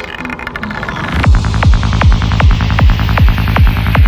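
Dark psytrance track opening: a rising synth sweep builds up, then about a second in a kick drum and rolling bassline come in at about two and a half beats a second, with hi-hats ticking over them.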